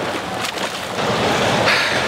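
Water splashing and churning as a swimmer strokes up the lane to the pool wall, with a louder splash near the end as he arrives.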